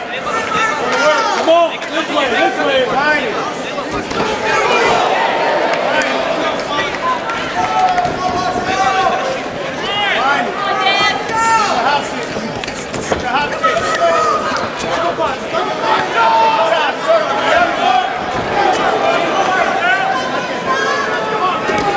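Crowd shouting and cheering at a cage fight, many voices overlapping.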